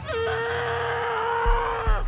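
A woman's long scream, one held note that drops a little in pitch as it ends, with two deep thuds under it in the second half.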